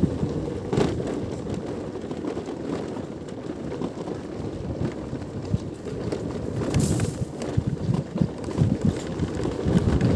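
Wind buffeting the microphone as a low, uneven rumble, with a brief knock about a second in and a sharper click about seven seconds in.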